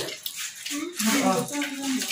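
Running water splashing steadily, with people talking over it.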